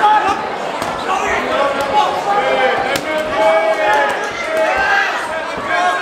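A crowd of spectators shouting and talking over one another in a large hall, with a few sharp smacks of gloved punches landing, the clearest about halfway through.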